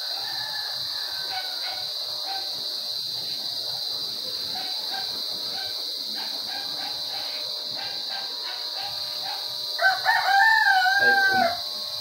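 A rooster crows once, loud and drawn out for nearly two seconds, about ten seconds in. A fainter call comes near the start. Under it runs a steady high-pitched buzz.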